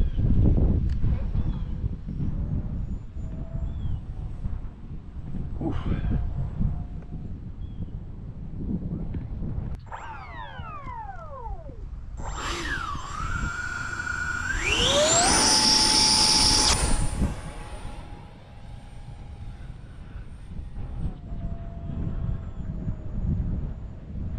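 Electric ducted fan of a 3D-printed PETG F-35C model jet, with wind rumbling on the microphone. About ten seconds in, a whine falls away as the fan spools down. Then the fan spools up in steps to a loud, high full-power whine held for about two seconds and settles into a steadier, lower whine in flight that drops in pitch near the end.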